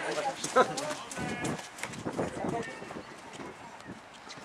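Voices calling and shouting during a football match, with a single sharp knock about half a second in, the loudest sound here.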